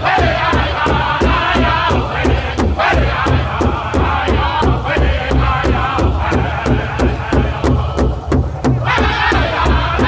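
Powwow drum group: several men beating one large shared hide drum in unison, about four strokes a second, while singing together. The singing drops out briefly about eight seconds in while the drum keeps going, then the voices come back in.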